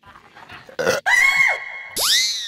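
Comic sound effects: a short loud burst about a second in, then a high steady tone with a brief falling whistle inside it, ending in a rising swoosh.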